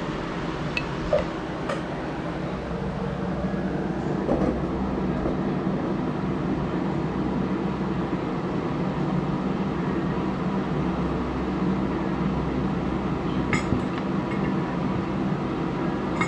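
Steady low mechanical hum, with a few light clinks of glass and cutlery against a wooden board.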